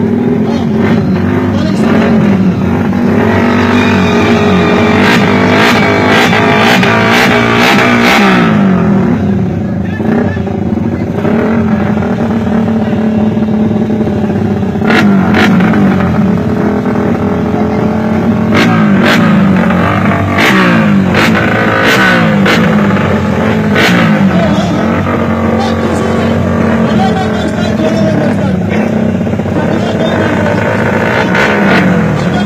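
A racing engine revved over and over close by, its pitch rising and falling with each blip, with short sharp cracks here and there among the revs.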